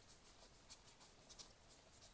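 Near silence with a string of faint, short ticks and rustles: Pokémon trading cards being slid apart and flipped one past another in the hands.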